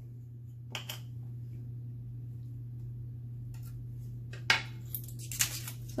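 Protective plastic film being peeled off clear acrylic keychain blanks and the small discs handled: a single click about a second in, then a cluster of sharp clicks and crinkles in the last second and a half, over a steady low hum.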